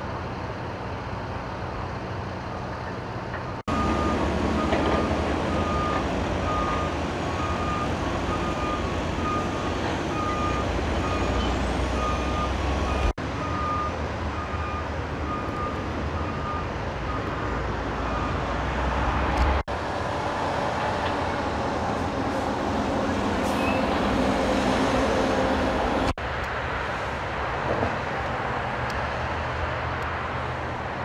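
Steady rumble of idling heavy engines and freeway traffic noise, with a truck's reversing beeper sounding a regular beep-beep for several seconds in the first half. The background shifts abruptly several times.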